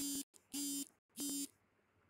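Phone message notification alert: three short buzzes at one steady low pitch within about a second and a half.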